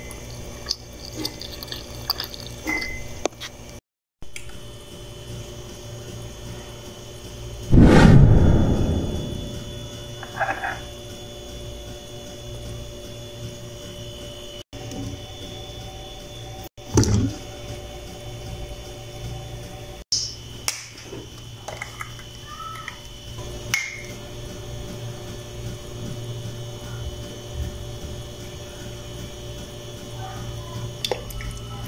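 Steady low hum with scattered light clicks and knocks, and one heavy low thump about eight seconds in that dies away over a second or two.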